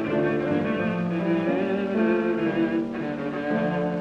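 Viola playing a sustained melody with vibrato over piano accompaniment, in an early Columbia gramophone recording from 1924–33 with little top end.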